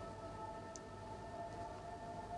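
Faint background music drone: several steady held tones sounding together without change.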